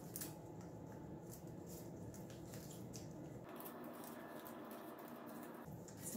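Faint rustling and light scattered clicks of folded magazine-paper strips being slid and pressed into place on a tabletop, over a steady low room hum.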